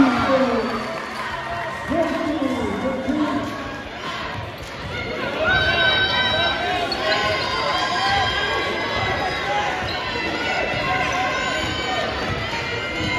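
Basketball dribbled on a hardwood gym court amid crowd chatter and shouts echoing in the gym.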